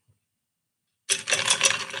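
Close handling noise: a clattering rattle of small hard objects that starts about a second in and lasts about a second.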